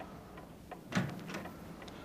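A door being opened, with a faint click at the start and a short clunk about a second in.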